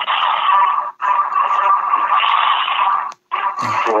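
Darth Vader-themed voicemail greeting playing over a phone's speaker: a loud, hissing sound in three long stretches, broken briefly about a second in and again about three seconds in, sounding thin and cut-off as a phone line does.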